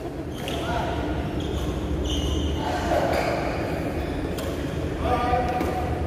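Badminton rally in a sports hall: racket hits on the shuttlecock and players' footwork on the court, with voices in the background and the hall's echo.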